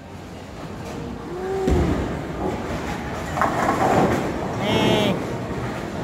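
Busy bowling alley: a steady rumble of balls rolling down the lanes and the pin machinery, with voices calling out over it.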